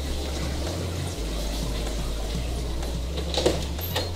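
Steady wash and trickle of water circulating through a reef aquarium's pumps and overflow, with a low hum underneath.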